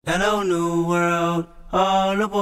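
A sung vocal line begins abruptly: one voice holds two long, drawn-out notes with a brief break about one and a half seconds in, with little accompaniment.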